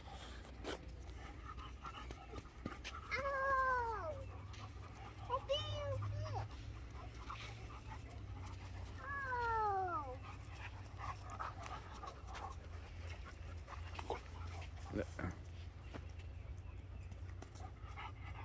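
Three short vocal calls, each falling in pitch, a few seconds apart, over a low steady rumble.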